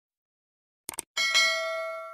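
Subscribe-button sound effect: a quick double mouse click, then about a second in a bright notification bell ding that rings out and fades.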